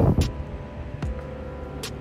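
Quiet background with a faint steady hum and a few light clicks while a Hyundai Kona Electric is started by remote: being electric, it gives no engine sound.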